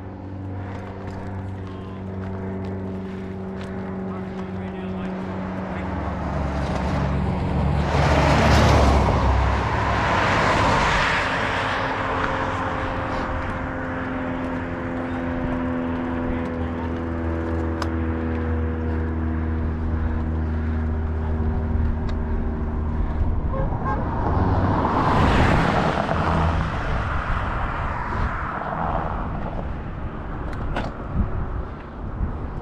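Highway traffic heard from the roadside: two vehicles pass one after the other, each swelling up and fading, the first about eight seconds in and the second about twenty-five seconds in, over a steady engine drone.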